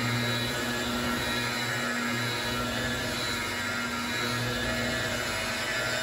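Makita electric polisher running steadily, its foam pad buffing compound over a painted panel, with a steady motor hum and whine that swells slightly now and then as the pad is worked back and forth.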